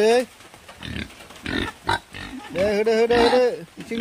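Pigs grunting in short bursts around a feeding area, between bits of a person's speech.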